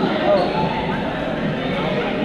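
Many people talking at once in a large sports hall, a continuous babble of overlapping voices.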